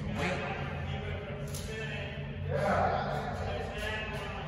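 Men's voices talking and calling out, loudest a little past halfway, over a steady low rumble of machinery.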